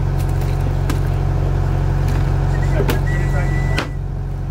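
The inboard engine of a 1970s cruiser running steadily under way, with a sharp knock near the end.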